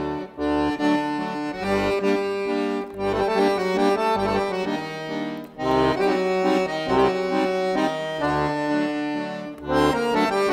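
Solo piano accordion playing a traditional Georgian folk tune, a held melody and chords over pulsing bass notes, with brief breaks about half a second in and again near the middle.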